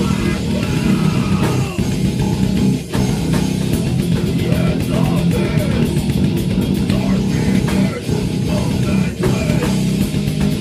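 A rock song with electric guitar and drum kit, playing continuously.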